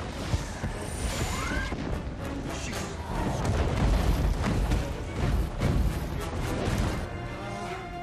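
Movie action-scene soundtrack: dramatic music over the deep booms and crashing impacts of flaming debris exploding on the ground, with the heaviest rumbling about halfway through.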